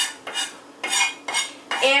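Chef's knife chopping onion on a wooden cutting board: about four separate, uneven strikes of the blade against the board.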